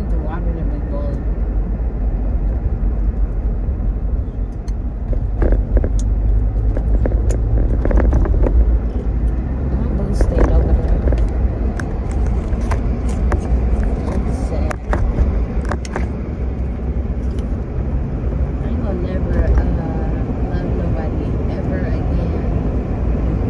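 Steady low rumble of a car's road and engine noise heard inside the cabin, with indistinct voices now and then and a few sharp clicks.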